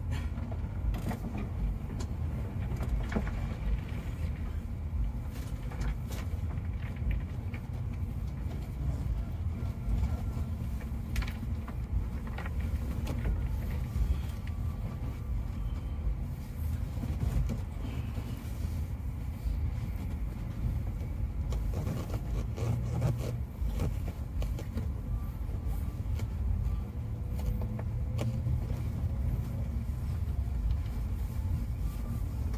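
Cabin noise of a double-decker coach on the move: a steady low engine and road rumble, with scattered light knocks and rattles from the cabin.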